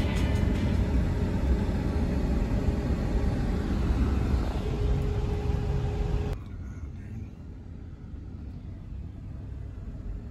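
Road and engine rumble inside a moving vehicle's cabin. It is louder for the first six seconds or so, then drops suddenly to a quieter steady rumble.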